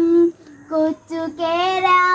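A boy singing a Malayalam song alone, without accompaniment: a held note breaks off shortly in, a brief note follows after a breath, and about a second in another long note rises slightly and is held.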